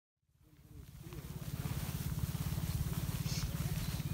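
Sound fading in to indistinct voices of a group of people talking outdoors, over a steady low rumble.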